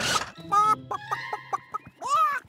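A hen clucking in a quick string of short, sharp clucks, just after a shouted "chicken!".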